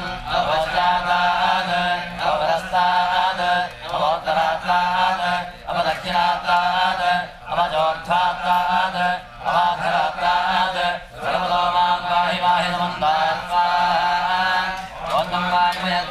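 Male priests chanting Sanskrit mantras during a homa fire offering, in phrases with short breaks for breath every second or two.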